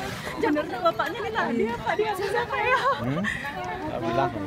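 Several people talking over one another: a close group chattering.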